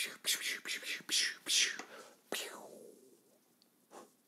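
A man whispering for about two seconds, then a single long "shh" that falls away and fades out.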